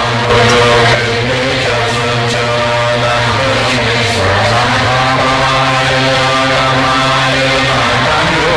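A Tibetan Buddhist refuge prayer sung in slow, long-held lines over a steady low drone.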